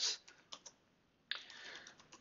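Computer keyboard typing: a few scattered, soft keystrokes.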